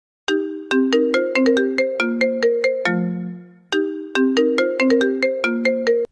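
Phone ringtone for an incoming call: a quick melody of short struck notes that ends on a low held note, then starts over about three and a half seconds in and is cut off near the end.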